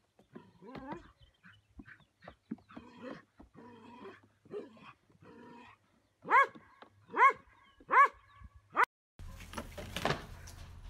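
Goat kids bleating again and again, faintly at first, then four loud bleats about a second apart in the second half. Just before the end the sound cuts to a steady hiss.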